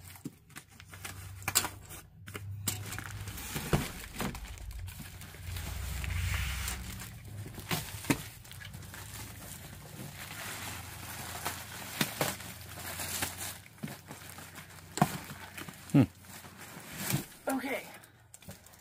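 A stapled, worn cardboard box being cut open with a utility knife and pulled apart by hand: cardboard tearing and scraping with scattered sharp snaps and knocks. Plastic crinkles near the end as a smaller box is lifted out.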